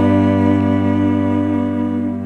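Solo cello played with the bow, holding a steady low note with a sustained higher note above it in a double stop.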